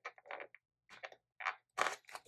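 Several short paper crinkles and crackles from a sticker-book sheet being handled as a fingernail tries to lift a sticker off its backing.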